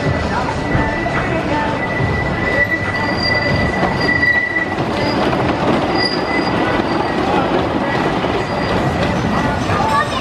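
A Philadelphia Toboggan Coasters wooden roller coaster train rolling along its track with a steady rumble and clatter of wheels. A continuous high-pitched wheel squeal runs over it and is loudest in the middle.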